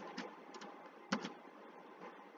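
A few computer keyboard keystrokes, faint clicks with the clearest about a second in, over a low background hiss.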